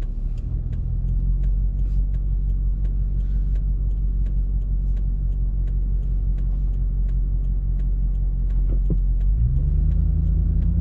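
Car engine idling while stopped, heard from inside the cabin, with a faint steady ticking about twice a second from the turn signal. Near the end the engine note rises as the car pulls away.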